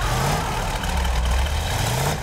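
Car engine running with a low, uneven rumble and two short revs that rise in pitch, one near the start and one near the end.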